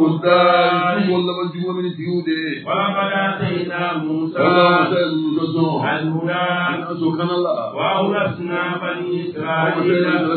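Voices chanting an Islamic religious chant, with long held melodic phrases that break every second or two over a steady low tone.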